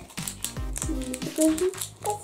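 Background music with a steady bass line, a child's voice briefly, and light clicks and crinkles from a small plastic candy packet being handled.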